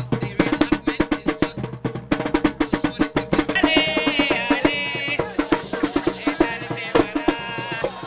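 Live Garifuna drumming: rope-tensioned wooden hand drums beaten in a fast, steady rhythm. High voices join in about halfway through.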